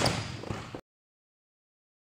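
A single sharp smack of a volleyball being spiked, ringing out in a gym's echo, with a lighter knock about half a second later. The sound cuts off abruptly to dead silence before one second in.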